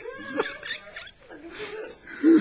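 Indistinct, scattered human vocal sounds: brief fragments of voices with a few short sliding yelps, no clear words.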